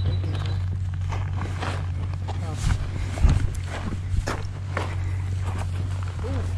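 Footsteps on dry dirt and loose stones, about two steps a second, over a steady low hum.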